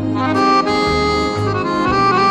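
Accordion playing a sustained melody over a light orchestral accompaniment, with a bass line moving note to note beneath it.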